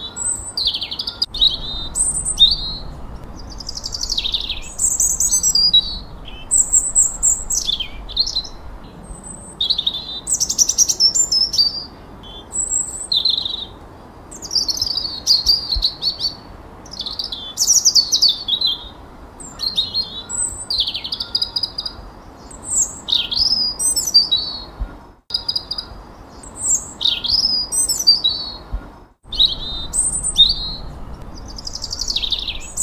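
Songbirds singing: a steady run of short, high whistles, chirps and trills, one phrase after another with barely a pause.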